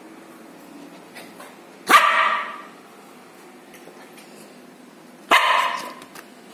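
Six-month-old Lhasa Apso puppy barking twice: a single bark about two seconds in and another near the end, each short and fading quickly.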